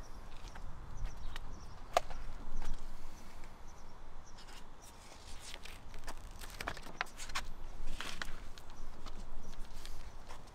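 Scattered light clicks and rustles from a paper sheet of vinyl stickers being handled, with light footsteps on pavement, over a low steady rumble.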